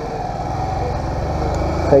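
Small motorcycle engine running steadily at low speed in slow traffic, a little louder toward the end.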